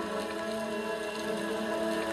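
Soft background music: a sustained, held chord of several steady tones with no beat, continuing under the narration's pause.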